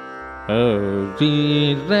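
Male Carnatic vocalist singing over a steady drone. The voice enters about half a second in with ornamented, oscillating slides (gamakas), then holds a couple of notes and glides up to a higher one near the end.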